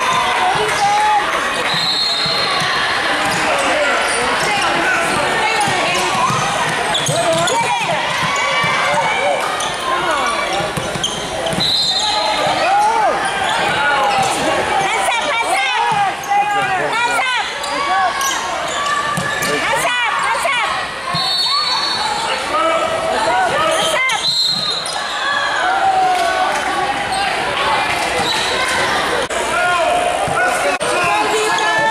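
Basketball game in a gym: a ball dribbling on the hardwood court amid many overlapping voices of players and spectators talking and calling out, with a few brief high-pitched squeaks.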